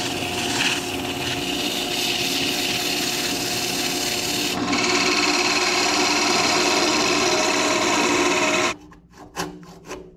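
Wood lathe running with a steady motor hum while an abrasive pad sands the spinning red cedar, then a turning tool cuts into the wood with a louder, rougher scraping from about halfway. Near the end the sound cuts off suddenly and a few short handsaw strokes follow as the piece is sawn from the waste at its neck.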